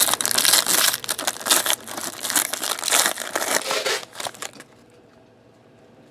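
Foil wrapper of a 2014 Topps Tribute baseball card pack being torn open and crinkled by hand: a dense crackle of crumpling foil that stops about four and a half seconds in.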